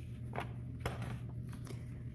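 A few faint, short clicks and taps as a hand grips and lifts a styrofoam plate off a clay slab, over a low steady hum.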